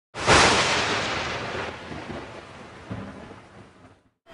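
Intro sound effect: a sudden loud crash that dies away slowly over about three and a half seconds.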